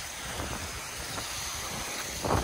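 Steady, even rushing of a waterfall and the cascading stream below it.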